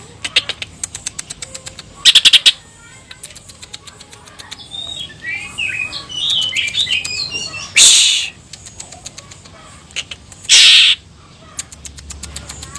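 A male green leafbird (cucak ijo) singing in its cage, a mix of rapid clicking trills and quick warbled high notes, its song full of notes borrowed from other birds. Three loud short hissing bursts cut in about two, eight and ten and a half seconds in.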